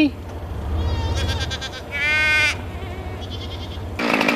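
Boer goats bleating: a fainter bleat just over a second in, then a louder, clearer half-second bleat about two seconds in.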